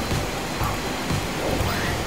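Soft background music over a steady hiss.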